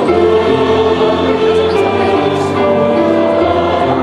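A mixed choir of men's and women's voices singing a sacred song in sustained, held chords.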